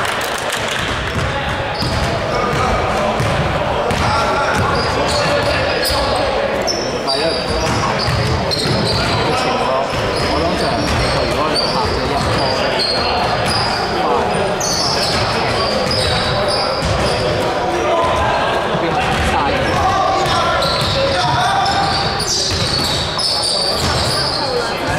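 Basketball game sounds in a large gym: the ball bouncing on the hardwood floor, sneakers squeaking and players calling out, all echoing in the hall.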